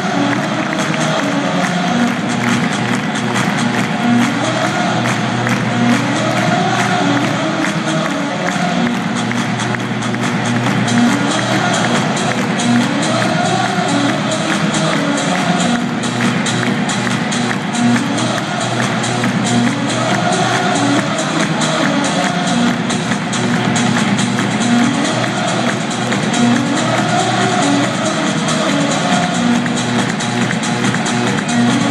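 Dance music with a steady beat played over an arena's sound system, with crowd noise underneath.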